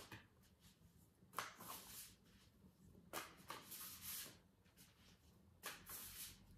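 Faint swishes of a deck of oracle cards being shuffled by hand, in a few short bouts a second or two apart.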